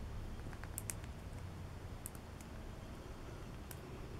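A few faint, sharp clicks, spaced irregularly, as a clear plastic in-line filter housing is twisted and worked apart by hand.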